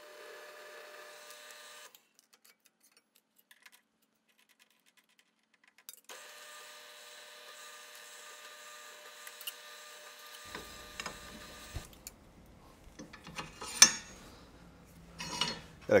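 Drill press motor running with a faint, steady whine while drilling holes in a thin steel plate, cutting off abruptly twice with a silent gap between. Near the end, several knocks and one sharper clank as the steel plate is handled in a bench vise.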